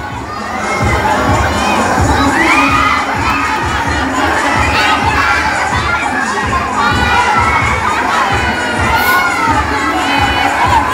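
A large crowd of children screaming, shrieking and cheering all at once, many high voices overlapping without a break, in excited reaction to a costumed dinosaur coming close to them.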